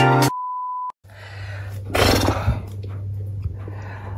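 Music stops abruptly, followed by a single steady high-pitched electronic beep lasting just over half a second that cuts off into brief silence. Then a low steady hum with a brief rustle about two seconds in.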